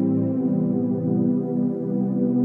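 Slow ambient synthesizer meditation music, sold as a 396 Hz solfeggio healing tone, with soft, overlapping notes held and changing slowly.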